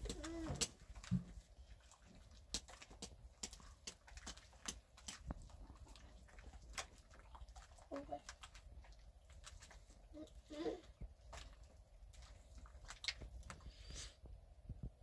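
Soft, scattered clicks and knocks of hands working a wet white powder paste in a metal basin. Two brief cooing calls from a dove come in, about eight and ten and a half seconds in.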